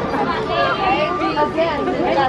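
Indistinct chatter of many people talking at once in a busy crowd, several voices overlapping with no one voice standing out.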